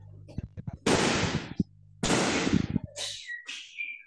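Noise from an open microphone on a video call: a steady low electrical hum, with two loud rushes of noise like breath or rustling against the mic about a second apart. Near the end comes a brief high whistle-like tone that steps in pitch.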